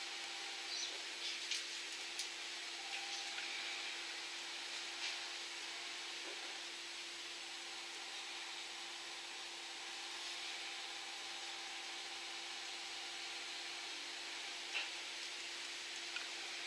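Faint steady hiss with a low hum, and a few soft clicks in the first seconds and one near the end as tweezers place small adhesive French-tip nail tapes on a fingernail.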